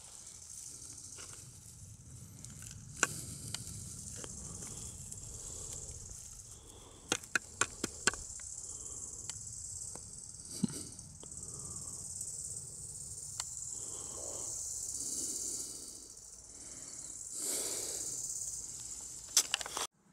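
A metal trowel digging in grassy soil: rustling and scraping, with sharp clicks as the blade strikes stones. There is one click about three seconds in, a quick run of four around seven to eight seconds, and single clicks later. A steady high-pitched hiss runs underneath.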